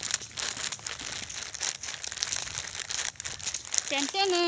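Irregular crinkling and rustling close to the microphone, with many small crackles.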